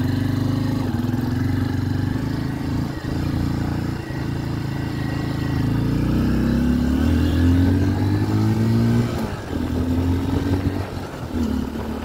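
Honda XR150L's single-cylinder four-stroke engine running as the motorcycle is ridden, the note dipping briefly a few times and rising about halfway through as it is shifted through the gears by ear. The engine is brand new and in its break-in period, so it is ridden gently rather than revved hard.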